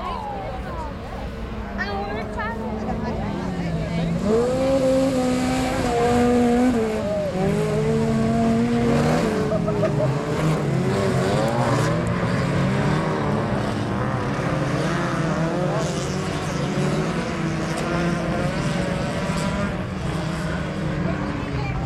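Autocross car engines revving hard on a dirt track, the pitch rising and falling with throttle and gear changes. The engines get louder about four seconds in, and several pitches overlap in the second half.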